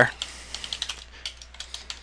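Computer keyboard being typed on: a quick, uneven run of light key clicks.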